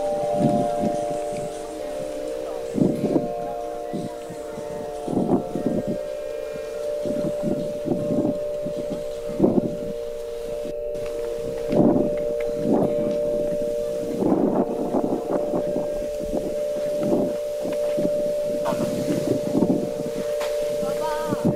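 Wind buffeting the camera microphone in irregular gusts every second or two, over a few steady held tones.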